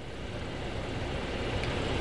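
Outdoor road traffic noise, a vehicle approaching and growing steadily louder.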